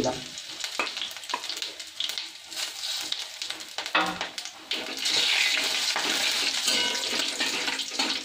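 Whole spices (cumin seeds, dried red chillies, bay leaf, black peppercorns, cloves) sizzling in hot oil in a steel kadai, with scattered clicks of a steel spatula against the pan. About five seconds in, the sizzling turns louder and steadier.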